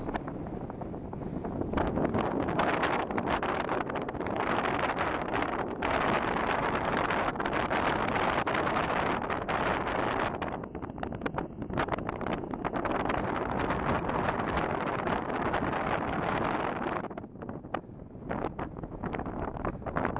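Wind buffeting the camera's microphone in uneven gusts, easing off briefly near the end.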